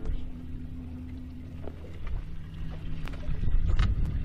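Boat motor idling: a low steady hum with a few light clicks, louder near the end.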